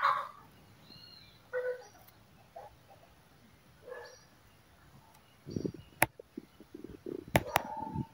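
A few faint, short bird calls in the first half, then close rustling of a bird being handled, with several sharp clicks in the last three seconds, the loudest of the sounds.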